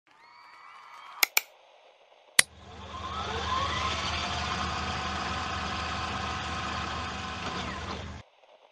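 Edited intro sound effects: a few rising tones, then three sharp clicks. A steady hum with hiss follows, with tones gliding up into a whine, swelling and holding until it cuts off suddenly at the end.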